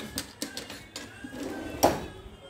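A few light clicks and knocks of things being handled, with one louder knock near the end.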